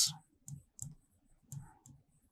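Marker pen writing on a whiteboard: a few faint, short clicks and taps as the tip strikes and lifts from the board.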